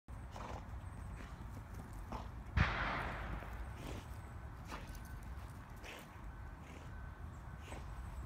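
A dog's paws thudding on grass, in uneven single steps, as it runs about with a rope toy in its mouth. There is a steady low rumble throughout and a single louder thump about two and a half seconds in.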